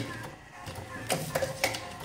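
A handful of light clicks and taps, about five at uneven intervals, from empty paper cigarette tubes being handled against an acrylic tobacco-filling machine.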